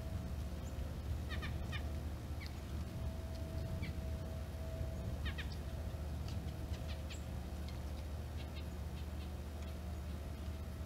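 Small wild birds calling at backyard feeders: short call notes in quick runs of three or four, about a second and a half in and again about five seconds in, with scattered single notes between and after, over a steady low background rumble.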